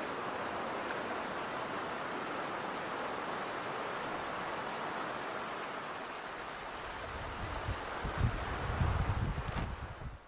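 A small creek running steadily over rocks, an even hiss of flowing water. In the last few seconds a low, uneven rumble comes in beneath it.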